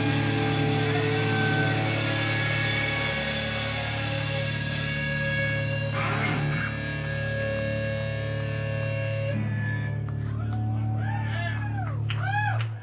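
Live rock band's electric guitars and bass left ringing in a sustained low drone after the drums and cymbals stop about five seconds in: the close of a song. A short noisy burst comes a second later, and pitched vocal-like fragments rise and fall near the end.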